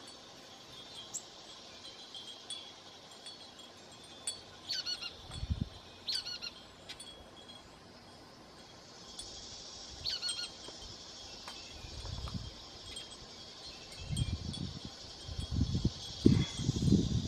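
Faint outdoor ambience of wind chimes tinkling, with a few short falling bird calls and occasional soft low knocks.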